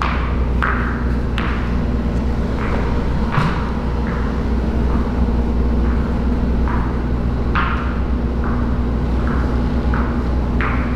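Spiked shoes and a squeegee working through a wet epoxy floor coating: short sharp noises, about one a second, over a steady low hum.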